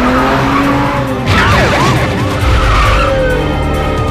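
Car-chase sound: a car engine revving with a rising pitch, then tyres squealing and skidding with wavering pitch from about a second in, over film-score music.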